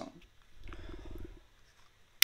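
A woman's short, low creaky vocal sound, a rapid rattling buzz lasting under a second.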